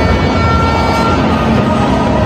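Loud stadium crowd noise mixed with music from the public-address system, with a held horn-like tone through the middle.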